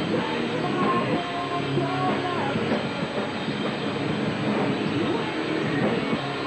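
A band playing loud rock live, heard as a dense wash of distorted electric guitar and drums through a camcorder microphone, with held notes, one sliding down about two and a half seconds in.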